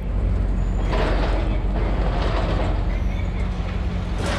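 Duck boat's diesel engine running steadily with a low rumble, with a hiss about a second in.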